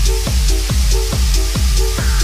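Techno from a DJ mix: a steady four-on-the-floor kick drum about twice a second over deep bass, with hi-hats and a short repeated synth chord.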